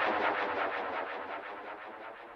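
The closing fade-out of a progressive house track: a rapid, evenly repeating synth pulse growing steadily quieter as the music dies away.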